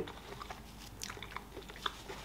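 Chewing a mouthful of fried chicken: faint, soft, irregular clicks and crunches, a few scattered through the moment.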